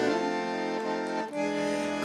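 Bandoneon tango accompaniment holding a sustained chord between sung lines, moving to a new chord a little past halfway.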